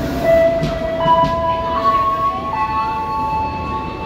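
Tokyo Metro 05 series electric train moving along the platform, its traction motors giving a steady whine over the low rumble of the wheels. The whine steps to new pitches twice, a little under halfway through and again past halfway.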